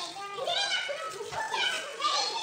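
A woman shouting angrily in a real recording from a classroom confrontation: "일진 놀이? 우리 애가 그럼 조폭이란 소리야?" ("Bully games? So you're saying my kid is a gangster?").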